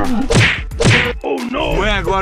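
Two sharp whack-like hits about half a second apart, each with a low tone dropping in pitch.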